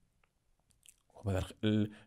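A short pause in a man's speech with a few faint mouth clicks, then his voice resumes a little past halfway.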